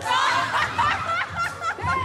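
Onlookers laughing and calling out in short bursts over recorded music with a bass line.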